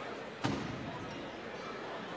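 Gymnasium crowd murmur and chatter, with one sharp impact about half a second in that rings briefly in the hall.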